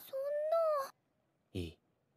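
A woman's high-pitched, drawn-out exclamation in Japanese from an anime soundtrack, just under a second long, rising slightly and then falling. A brief, low man's word follows shortly after a second and a half in.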